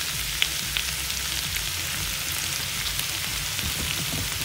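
Kale and crumbled hot Italian sausage frying in oil in a skillet: a steady sizzling hiss with a few faint crackles, the kale cooking down.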